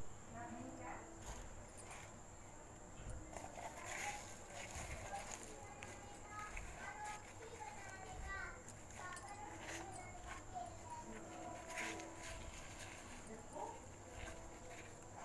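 Faint voices talking in the background, with a few soft clicks and handling noises and a steady high-pitched whine throughout.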